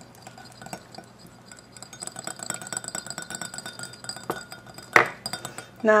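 Light clinking of a small glass bowl and a mini whisk against a glass mixing bowl, with faint ringing and a sharper clink about five seconds in.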